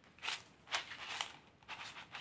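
Cardboard box of dried egg tagliatelle handled and turned over in the hand: a few short, dry rustles and scrapes.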